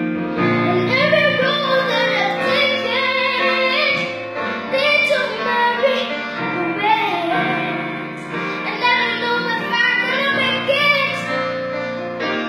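A young boy singing into a microphone, with piano accompaniment underneath.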